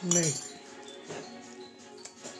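Television music playing in the background, with light clinks of metal on a steel plate.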